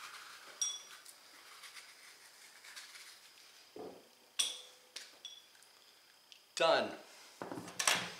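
A few light clinks of a glass bowl, each with a brief ring, as acorn squash seeds are knocked out into it: one about half a second in, and two more around four to five seconds in.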